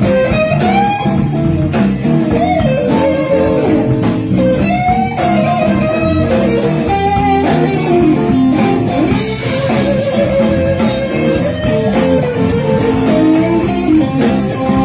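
Live electric blues band playing an instrumental passage: a lead electric guitar plays a solo line with pitch bends and vibrato over bass guitar and a drum kit with cymbals.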